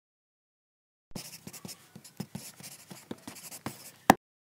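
An irregular run of clicks and scratchy noise, starting about a second in.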